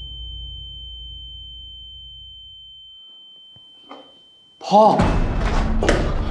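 A steady high-pitched ringing tone, the ear-ringing shock effect, held over a low rumble that fades away after a crash. The tone cuts off suddenly about four and a half seconds in as a young man shouts "Dad! Dad!"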